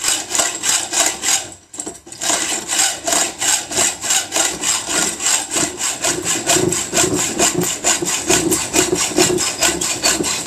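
Hand hacksaw cutting a piece of square steel tube clamped in a bench vise, in quick, even back-and-forth rasping strokes, with a brief pause about a second and a half in.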